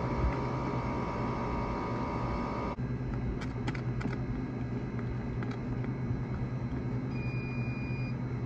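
Steady low hum of drink-station machinery, with a few light plastic clicks as a straw stirs a frozen drink in a lidded cup. A faint high beep sounds near the end.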